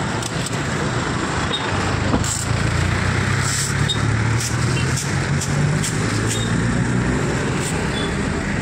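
Road traffic noise at the roadside, with a vehicle engine running close by. Its low hum grows stronger from about two and a half seconds in.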